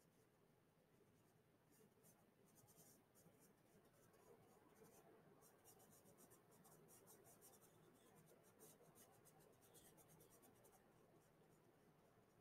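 Very faint scratching of a paintbrush working oil paint onto canvas: a quick run of light strokes that starts about two seconds in and dies away shortly before the end.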